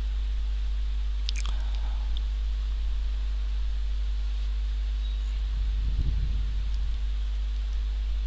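Steady electrical mains hum with a buzzy stack of overtones, picked up by a desktop recording setup. A single faint click about a second and a half in, and a soft low rustling noise around six seconds.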